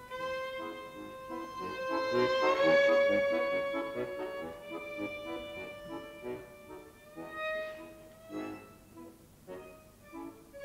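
Violin playing a long held note that slides up slightly and swells to its loudest about three seconds in, over repeated chords from a bayan (button accordion). After about five seconds the violin moves on in shorter, separated notes.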